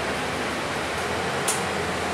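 Steady cabin noise inside a moving Mercedes-Benz Citaro bus: engine, tyres and ventilation blending into an even hiss with a low hum beneath. One brief sharp tick about one and a half seconds in.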